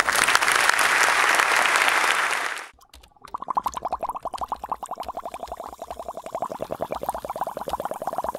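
Audience applauding, cut off abruptly about two and a half seconds in. After a brief gap comes a fast, even pulsing tone of about ten pulses a second.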